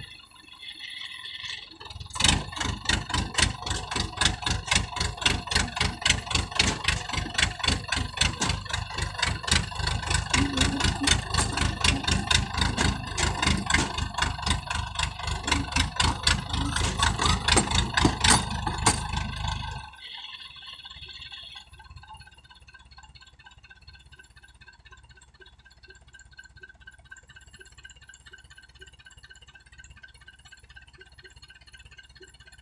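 Single-cylinder diesel engine of a homemade tracked farm carrier, hauling about fifty bags of rice, chugging hard in rapid even beats. It picks up about two seconds in and drops abruptly to a much quieter sound about twenty seconds in.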